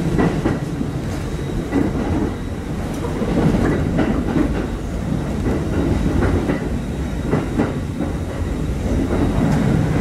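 Kintetsu electric train running, heard from inside the front cab: a steady low rumble with the wheels clacking over points and rail joints at uneven intervals.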